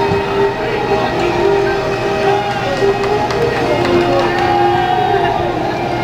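Bagpipe music leading a parade: long held melody notes over a steady drone, with people chattering underneath.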